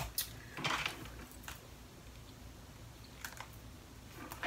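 A few light clicks and taps of long acrylic nails on a smartphone as it is picked up off a desk and handled, with a short rustle about half a second in.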